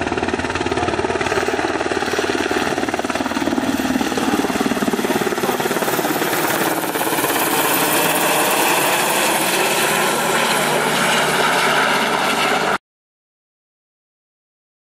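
T-70 (Black Hawk-type) firefighting helicopter flying close overhead, its rotor and turbine noise loud and steady. From about halfway through, a brighter rushing hiss builds as the water bucket is emptied onto the fire. The sound cuts off abruptly near the end.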